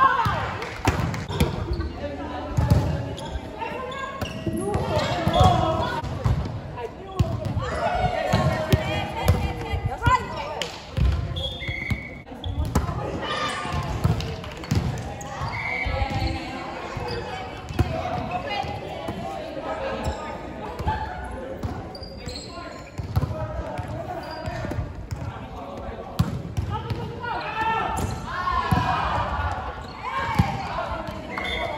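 Volleyball being struck again and again in a rally, with sharp thuds of the ball on hands and the sprung wooden floor, amid players calling out to each other in a large gym hall.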